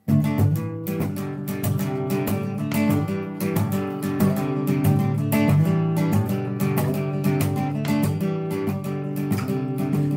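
Acoustic guitar strummed in a steady rhythm, playing a song's introduction. The chords start abruptly at the beginning.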